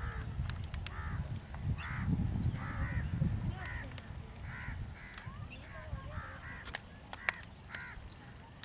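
A bird giving repeated harsh, crow-like caws, one or two a second, over a low rumble of wind and handling on the microphone, with a few sharp clicks near the end.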